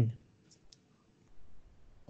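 A spoken word trails off, then two faint, short clicks come close together about half a second in, followed by quiet room tone.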